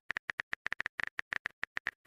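Rapid, even clicks of a phone-keyboard typing sound effect from a texting-story app, about eight or nine taps a second, as the next message is being typed.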